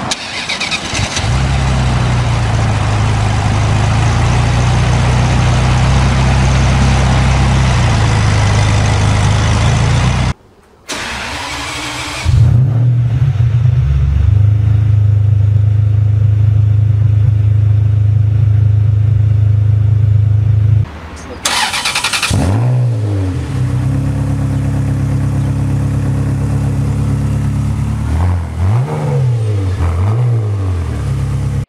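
Three Ferrari engines in turn. A 1995 F355 GTS's V8 catches about a second in and runs at a steady fast idle. After a brief cut, a 550 Maranello's V12 starts up and settles into a steady idle, and near the end a 360 Modena's V8 idles with quick revs just after it begins and again at the end.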